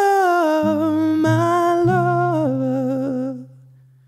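Male voice singing a held, wordless closing note over acoustic guitar. The note steps down in pitch past the middle and stops, and a low guitar note rings on and fades out, ending the song.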